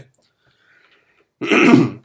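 A man clearing his throat once: a short, loud rasp about one and a half seconds in.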